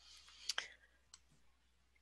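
A faint short click about half a second in, with a few fainter ticks after it, over a quiet room.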